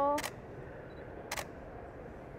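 A single camera shutter click about a second and a half in, after the tail end of a woman's spoken word.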